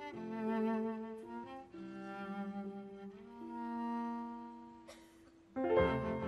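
Cello and piano playing classical chamber music: a sustained cello line with vibrato over piano, growing softer toward about five seconds in, then both coming back in much louder near the end.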